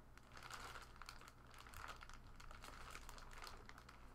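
Faint crinkling of a thin clear plastic bag as the football inside it is turned over in the hands, with small scattered crackles.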